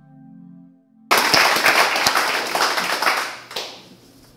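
Soft intro music fading out, then about a second in a small audience breaks into applause, which runs for a couple of seconds and dies away near the end.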